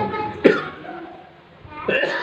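An elderly man coughing: one sharp cough about half a second in, and another starting near the end.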